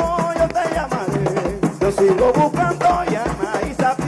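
Live Afro-Venezuelan hand-drum ensemble playing a steady beat, about three strokes a second, under a man's lead voice singing a salve.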